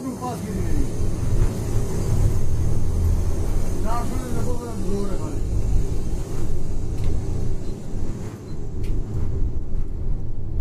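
Steady low rumble of a Yutong coach's engine and road noise, heard from inside the driver's cab while under way.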